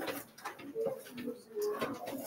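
A person's voice murmuring or humming quietly in short, low tones.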